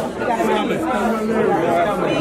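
Crowd chatter: several voices talking over one another, no words standing out.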